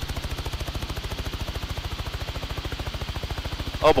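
News helicopter's rotor heard from on board: a steady, rapid, even pulsing of the blades.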